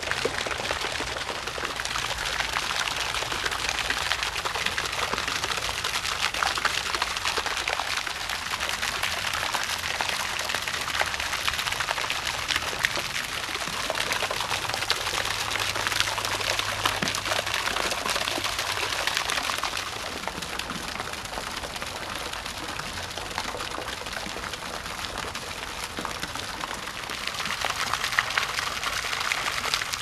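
Garden pond fountain splashing steadily, water falling onto the pond surface in a dense crackling patter. It dips a little in the latter part and grows louder again near the end.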